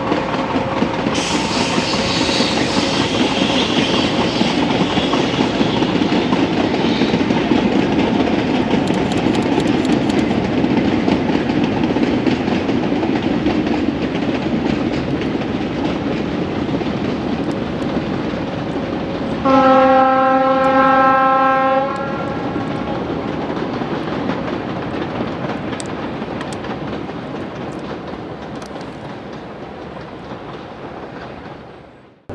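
Narrow-gauge diesel locomotive hauling a short train of wagons, its engine and wheels running, with a high squeal from about a second in lasting several seconds. A single horn blast of about two and a half seconds comes some twenty seconds in, then the train sound fades steadily as it moves away.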